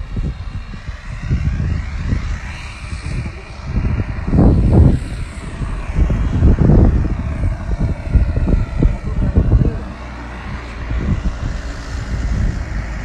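Wind buffeting a phone microphone on a moving vehicle, a continuous rumbling roar with irregular low gusts that are strongest about four to five seconds in and again around six to seven seconds.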